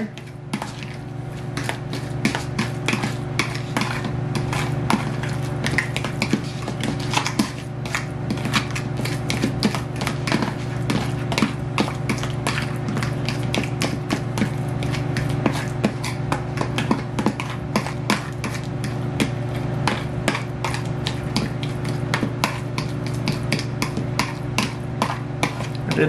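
Metal fork mashing and stirring guacamole in a plastic tub, with frequent small clicks and taps of the fork against the tub, over a steady low hum.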